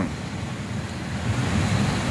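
Steady rushing of wind on the microphone in an open garden, an even noise with no distinct events.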